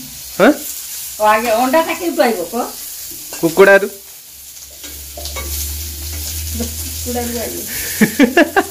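Oil sizzling steadily in a kadai as food fries and is stirred. A voice breaks in briefly a few times in the first half, and a low steady hum joins about five seconds in.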